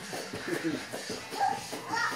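A small child's faint short vocal sounds over low room noise from movement on a foam mat.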